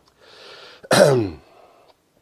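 A man breathes in, then clears his throat once, about a second in, with a short rasp that falls in pitch.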